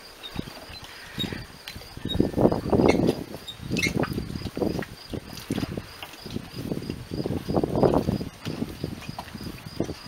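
Wheeled garden cart rumbling and rattling in uneven bursts as it is pushed over grass and paving, under a steady high cricket chirping.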